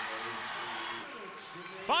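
Basketball arena crowd cheering a made three-pointer, dying down over the two seconds; a commentator's voice starts near the end.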